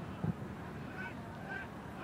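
Stadium ambience from a football match broadcast: a steady low crowd murmur, with two faint, brief high tones about a second in and half a second later.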